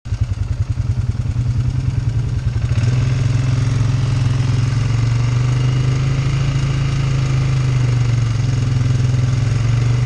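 Polaris ATV engine running under the rider, with a slow, distinctly pulsing beat at first, then picking up about three seconds in and running at a steady, higher pitch as the machine rolls along.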